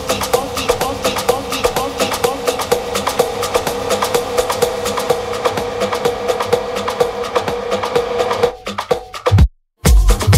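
Tribal tech house DJ mix in a breakdown: the kick drum drops out, leaving fast, dense percussion over a steady held note. Near the end the music thins, one hit lands, there is a split second of silence, and the full beat with the kick comes back in.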